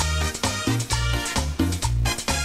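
Live tropical dance band playing an upbeat number, with a driving, rhythmic bass line under sustained melody notes.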